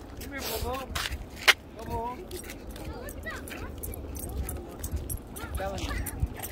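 Footsteps of someone walking in sandals over a dirt path and pavement, with the rustle of a handheld phone, short bits of voices in the background and one sharp click about one and a half seconds in.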